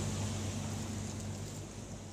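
A boat's engine running steadily, a low hum under a hiss of water and wind, slowly fading out.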